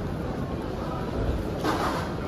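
Steady low rumble of busy airport-terminal background noise, with a short rustle near the end.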